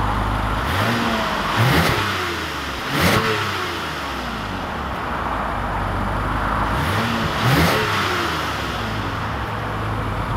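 2020 Toyota Camry XSE's 3.5-litre V6, heard at its exhaust from beneath the rear of the car: the engine idles and is revved three times, about two, three and seven and a half seconds in, each rev rising in pitch and falling back to idle. The revs are made in sport mode, which does not change the exhaust note.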